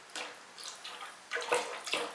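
Liquid wood-ash glaze in a bucket splashing as an unfired clay jug is dipped in and lifted out, in a few short sloshing bursts with glaze running back off the pot into the bucket.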